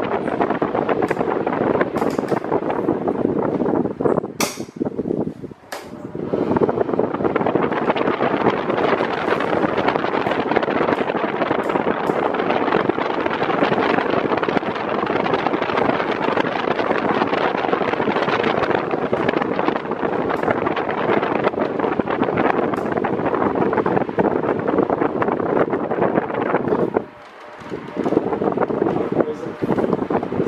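Arno Silence Force 40 cm electric desk fan running: a steady rush of moving air. Its sound drops briefly twice, about four to six seconds in and again near the end, while its speeds are being tested.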